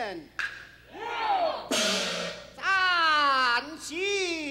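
Peking opera music: a high, voice-like melodic line sliding in long falling glides, with a percussion crash about halfway through.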